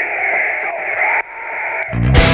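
Thin, hissy, radio-like sound with no low bass and no high treble, cutting out abruptly a little over a second in and then returning. Right at the end the full heavy-metal band comes in at full range.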